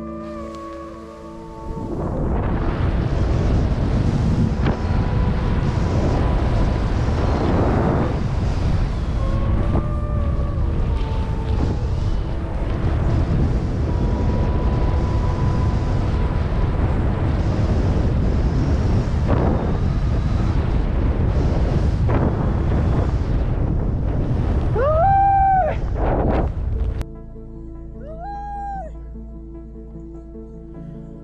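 Wind rushing over an action camera's microphone with skis hissing through deep powder snow on a fast downhill run; it starts about two seconds in and cuts off suddenly near the end. Background music plays under it, and a short rising call sounds shortly before it stops.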